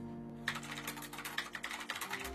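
Computer keyboard keys clicking in a quick, irregular run of taps, starting about half a second in, over soft background music with held notes.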